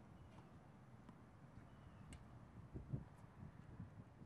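Near silence outdoors: a low wind rumble on the microphone with one low thump near three seconds in, and a few faint, distant clicks of tennis balls being struck, the clearest about two seconds in.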